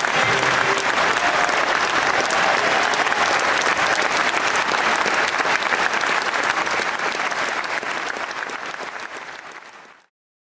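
Audience applauding, steady at first, then fading out over the last three seconds.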